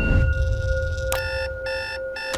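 Electronic bedside alarm clock beeping: two short beeps about half a second apart, starting about a second in. Underneath them run a low rumble and a held tone.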